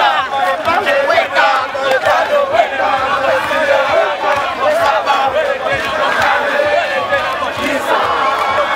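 A large group of people chanting and calling out together as they jog and march, many voices overlapping without a break.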